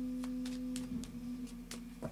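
A steady low ringing tone that fades after about a second, with a few faint clicks of tarot cards being shuffled in the hands.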